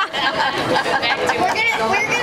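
Several voices talking over one another, indistinct chatter in a busy restaurant dining room.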